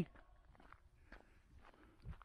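Faint footsteps on asphalt: a few soft, irregular scuffs.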